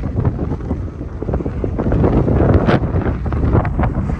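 Wind buffeting the microphone: a loud, rough rumble with crackles and no clear engine note.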